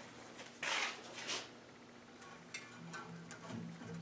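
Handling sounds as a log is set onto the band saw's aluminium sled carriage: two short scuffs in the first second and a half, then a few faint light clicks.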